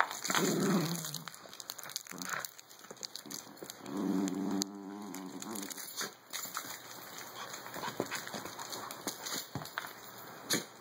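Small dogs growling in play while tugging at a plush toy: one growl just after the start and another about four seconds in, each under a second long. Scattered clicks and scuffs run between them.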